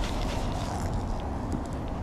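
Steady outdoor background noise with a low rumble and a few faint ticks.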